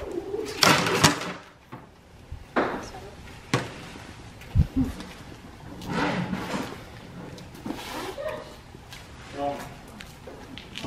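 Lasso ropes swung and thrown at a dummy roping steer: a few sharp slaps and swishes about a second in and around two and a half and three and a half seconds, and a dull thud just before five seconds. Quiet talk and laughter come in between.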